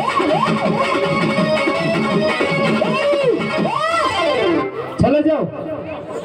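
Electronic keyboard playing a folk dance tune with sliding, pitch-bent melody notes over a fast repeating bass pattern. The music breaks off with a click about five seconds in.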